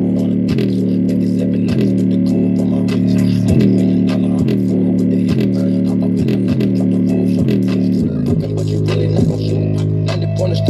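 Bass-heavy hip-hop beat played at full volume through a JBL Charge 4 portable Bluetooth speaker set to its LFM bass EQ, its exposed woofer driving deep bass notes that change about every half second to second with a quick drop in pitch at each change. Hi-hat ticks run above the bass.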